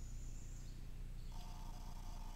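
Handheld EMF meter's electronic alert tone, a steady note starting about a second and a half in and still sounding at the end, over a low steady hum. The investigators take the meter's signals as a spirit's yes-or-no answer.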